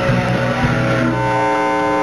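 Live rock band playing, with electric guitar prominent. About halfway through, the low end drops away and steady held notes ring on.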